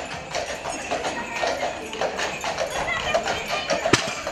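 Hooves of a pair of draft horses clip-clopping on the paved street as they pull a covered wagon, with music and voices underneath. A single sharp click comes just before the end.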